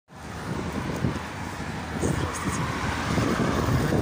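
Road traffic noise with wind rumbling on the microphone.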